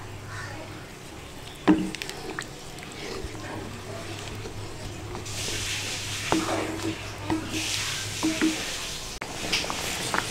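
A wooden spatula stirring a simmering coconut-milk squid curry in a pan, with a few knocks of the spatula against the pan and two spells of liquid sloshing and hiss from the stirred broth in the second half.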